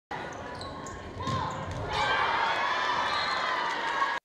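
Indoor volleyball rally: the ball is struck sharply several times in the first couple of seconds over the noise of a gym crowd. The crowd's voices grow louder about halfway through.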